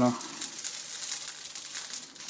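Panini sizzling and crackling between the hot ribbed plates of an electric contact grill as the lid presses down on them, a dense crackle that dies down at the end.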